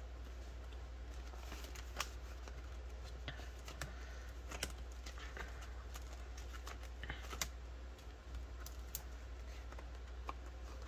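Plastic binder pockets and polymer banknotes being handled: soft rustling and crinkling with a few sharp clicks, several seconds apart, over a steady low hum.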